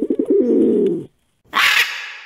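A pigeon cooing: one low, warbling coo lasting about a second. About a second and a half in comes a short, harsh, high-pitched screech that trails off.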